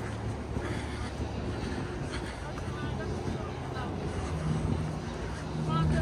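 Themed sound-effect audio playing over the X-Flight roller coaster's queue-area speakers: a low steady rumble, joined by a steady low hum about four seconds in.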